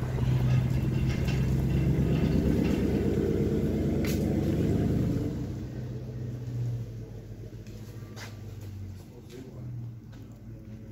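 A motor vehicle engine running steadily for about five seconds, then the sound drops away to a quieter background with a few faint clicks.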